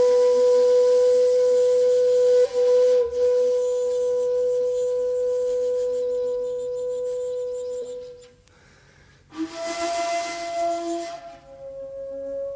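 Long end-blown bamboo flute of the shakuhachi kind (a kyotaku). It holds one long, breathy note that wavers slightly about three seconds in and fades out near eight seconds. After a pause of about a second, a new note starts with a breathy attack and moves through a couple of pitches.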